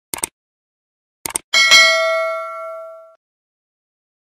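Subscribe-button animation sound effects: short mouse clicks, two more clicks about a second later, then a bright notification-bell ding that rings out for about a second and a half.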